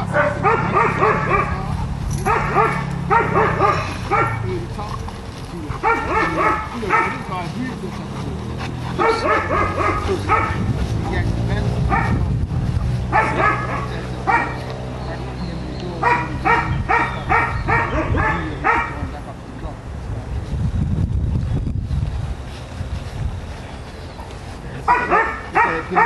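A dog barking in quick bursts of several barks each, about seven bursts with short pauses between them, over a steady low hum.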